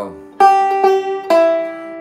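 Gibson Mastertone five-string banjo picked with fingerpicks: three single notes played slowly about half a second apart, the last one lower, each ringing out and fading.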